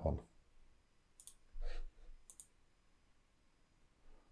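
Two faint computer mouse clicks about a second apart, with a short low murmur between them.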